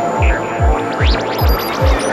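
Full-on night psytrance with a steady four-on-the-floor kick drum, about two and a half beats a second, under a rolling bassline. Glitchy electronic effects play over it, with a rising synth sweep about a second in.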